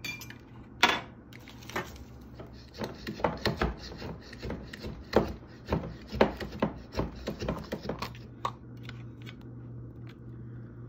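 Hand-pressed plunger food chopper chopping onion in its glass jar: a run of quick clacks, about three a second, from about three seconds in until a couple of seconds before the end, with a few single knocks before it. A steady low hum runs underneath.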